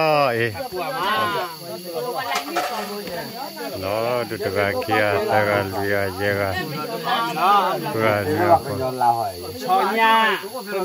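Several people talking, their voices overlapping in casual conversation, with a thin steady high-pitched tone behind them.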